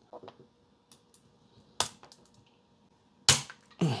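Cutting pliers snapping through the corner of a hard plastic SGC graded-card slab: one sharp crack near the end, after a lighter click about two seconds in.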